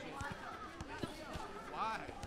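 Gym background of people talking, with several dull thuds of weights about half a second apart.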